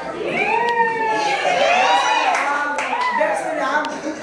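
Excited, high-pitched voices of a small group, with a few sharp hand claps.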